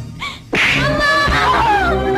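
Film soundtrack: a sudden sharp hit about half a second in, then a woman's long, falling anguished cry over dramatic background music.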